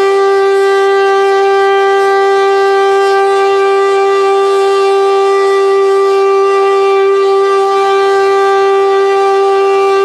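Hörmann HLS F71 compressed-air siren sounding one loud, steady tone with unchanging pitch, rich in overtones: the one-minute "Entwarnung" all-clear signal, meaning that all warnings are lifted.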